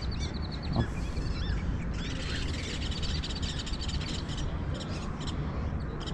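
Small birds chirping and twittering throughout, with quick trilled runs of high notes, over a steady low background rumble.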